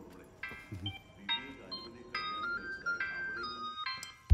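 Background film music: a light melody of short, high notes stepping up and down, beginning about half a second in.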